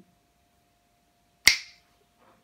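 A single sharp finger snap about one and a half seconds in, dying away almost at once.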